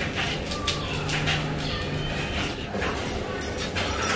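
Wooden spoon stirring and scraping in a frying pan of sauce, in several short strokes. A low, steady tone lasting about a second comes in about a second in.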